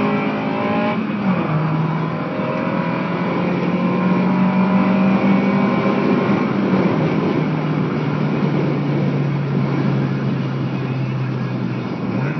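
Car engine and road noise heard from inside the cabin while driving, steady throughout. The engine's pitch steps down about a second in and again about seven seconds in.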